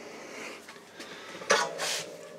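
Quiet room tone, broken about a second and a half in by a brief hiss and a fainter one just after.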